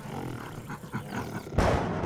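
A big cat's growl, low and rough, breaking into a loud roar about one and a half seconds in.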